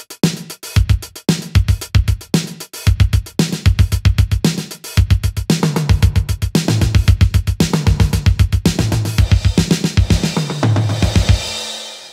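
Drum-machine beat played from sampled LinnDrum one-shots: kick, snare, hi-hats and toms in a steady pattern, with repeated hits stepping down in velocity to make a fake delay. The pattern gets busier about halfway through and stops just before the end.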